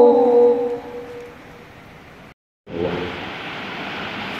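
A held sung note at the end of a song through the hall's PA, fading out over the first second into the hall's ambience. After a brief dropout, the steady murmur of a large seated crowd in the auditorium.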